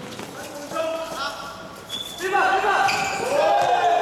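Basketball players shouting and calling out during a game, loudest in the second half, with a basketball bouncing on a hard court.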